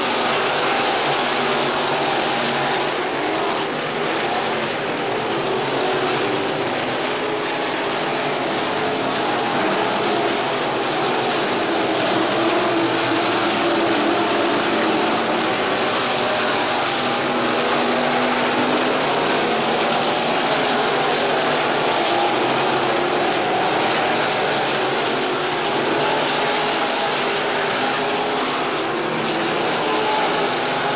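A field of IMCA Sport Modified dirt-track race cars running their V8 engines at racing speed around the oval. It is a steady, dense engine drone, with the notes of several cars overlapping and wavering as they come around.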